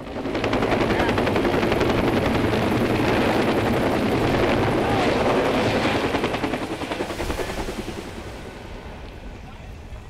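A firefighting helicopter passes low overhead, its rotor blades chopping in a rapid, even beat. The sound is loud through the first six seconds or so, then fades away over the rest.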